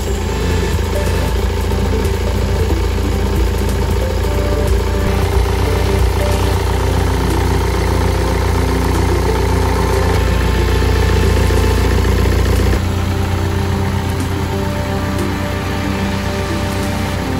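Yanmar marine diesel engine idling steadily, heard close up in its open engine compartment. Its deep, steady rumble eases about thirteen seconds in.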